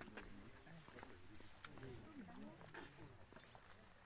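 Faint, distant voices of several people talking, with a few small clicks.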